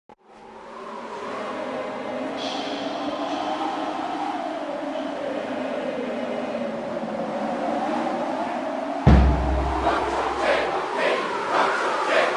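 Logo-intro sound design: music and crowd noise fading in and holding, then a sudden deep bass boom about nine seconds in, followed by repeated bursts of crowd yelling.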